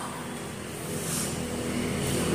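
A low, steady rumble of background noise that grows a little louder toward the end.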